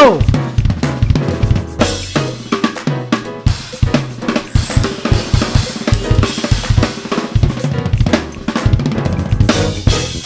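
Acoustic drum kit played in a busy groove, with kick drum, snare, hi-hat and cymbals, over a drumless backing track whose sustained notes carry under the hits.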